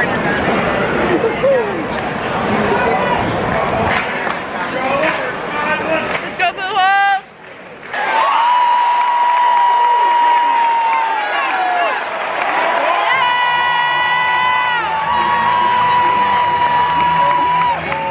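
Stadium crowd chatter, then a fan's long, high yell held on one steady note for about ten seconds, strongest near the end.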